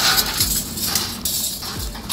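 Thin sheet-metal roof flashing and its round collar being handled and shifted by hand, with irregular scraping and light metallic rattling and a few dull low thumps.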